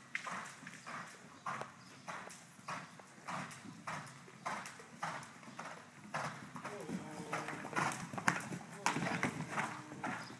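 Hooves of a cantering horse on the soft dirt footing of an indoor riding arena, a regular beat a little under twice a second. A voice joins in during the last few seconds.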